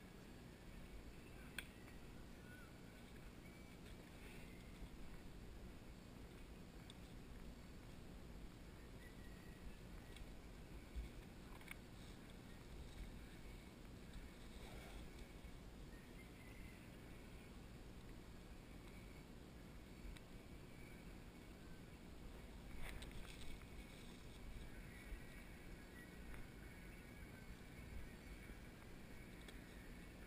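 Near silence: faint outdoor ambience with a low rumble and a few scattered soft clicks and knocks.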